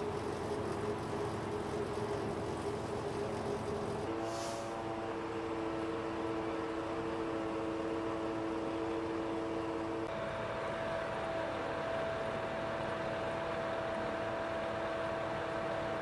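Steady engine drone of tanker trucks running at the roadside, a few held tones changing abruptly about four seconds in and again about ten seconds in, with a brief hiss about four seconds in.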